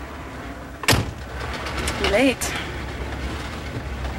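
Low, steady rumble of a car heard from inside the cabin, with one sharp knock about a second in.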